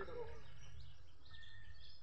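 Steady outdoor background noise with a low rumble, and faint voices at the very start.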